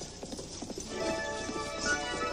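Horse's hooves clip-clopping as it pulls a carriage, a cartoon sound effect, with background music coming in about a second in.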